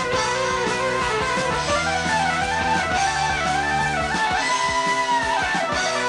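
Rock band playing live through an instrumental break with no vocals: a lead line with bending, gliding notes over electric guitar, keyboards, bass and drums.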